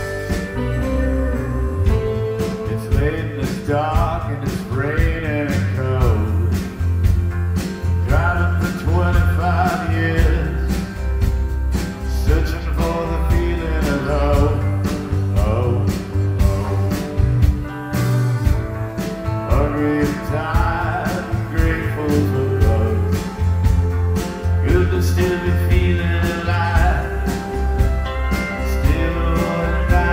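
A live country band playing a song: electric bass, guitars and percussion with a steady beat. A man sings lead through most of it, and a tambourine can be heard.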